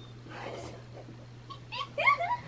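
A girl's breathy gasp of amazement, then a short high-pitched rising squeal near the end, over a steady low hum.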